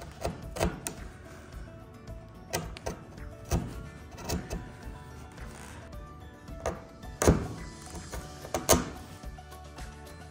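A sharp chisel paring fine shavings off soft pine end grain, in a series of short, crisp strokes, the strongest about seven seconds in. Quiet background music runs underneath.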